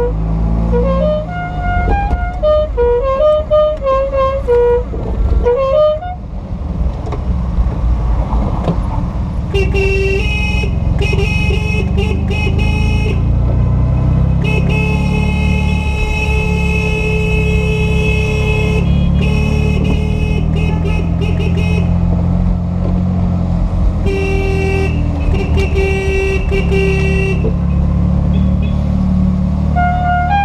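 Car horn tooting over the running engine of a vintage Fiat 500: several short toots, then one long blast of about five seconds, then more bursts of short toots. A music melody plays over the engine for the first few seconds.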